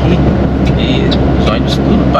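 Mercedes-Benz Atego truck's diesel engine running steadily at cruising speed, a constant low drone heard inside the cab, with road noise.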